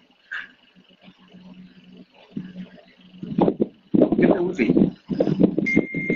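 After a near-silent pause, a man speaks in short halting phrases, with a single steady high beep starting near the end.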